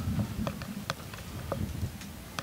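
Wind buffeting the microphone as an uneven low rumble, strongest at the start, with several sharp clicks scattered through it.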